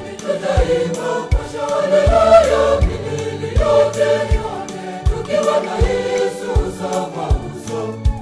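A mixed choir singing a Swahili Catholic hymn over backing music with a steady low beat, about one every three-quarters of a second.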